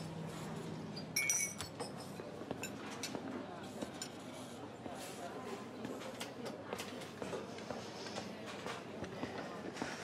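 A teaspoon clinks against a china teacup with a short ringing clink about a second in, over the low murmur of background voices and small clatter.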